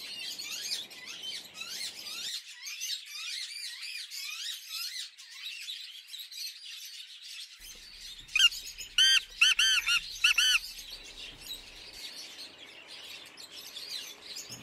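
Small birds chirping in a busy background chorus. About eight seconds in, a male black francolin calls: a quick series of about five loud notes over two seconds.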